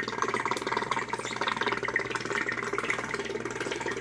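Aquarium air pump that feeds the whole fish room's air stones, running with a steady buzzing strange noise.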